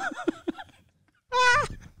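A man laughing: a few quick 'ha' sounds, then after a short pause a brief high-pitched laugh that rises in pitch.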